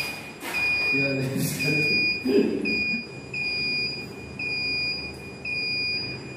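Notifier NFS-3030 fire alarm control panel's piezo sounder beeping: a high, steady tone pulsing about once a second, each beep about half a second long, the panel's trouble signal.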